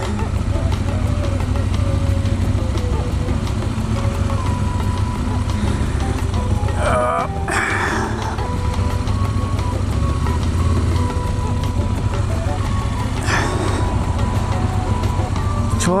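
Aprilia RSV1000's V-twin engine idling with a steady low rumble.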